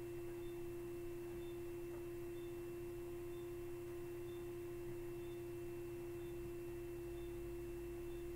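A steady hum at one pitch that does not change, with a faint soft tick about once a second.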